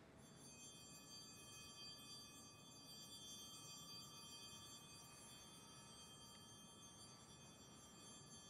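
Faint ringing of altar bells (sanctus bells) marking the elevation of the consecrated host: a cluster of high, steady tones that hangs on and slowly fades.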